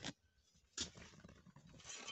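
A few faint, brief scrapes and crunches of a trowel in loose gravel chippings.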